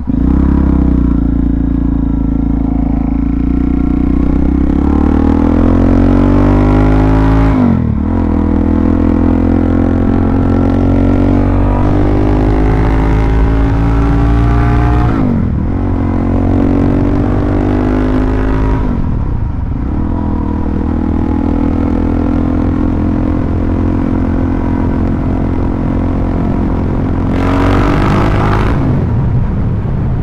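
Suzuki DR-Z400SM single-cylinder four-stroke engine being ridden: its pitch rises as it accelerates, then drops back at each gear change, several times. There is a short burst of hiss near the end.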